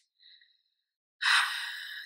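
A woman's audible sighing breath, starting a little past the middle after a brief near-silence and fading away.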